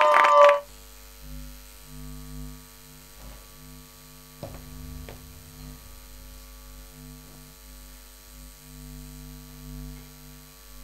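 The last chord of a folk-bluegrass song cuts off half a second in, leaving a low electrical mains hum from a club sound system that wavers slightly in level. A single click comes about four and a half seconds in.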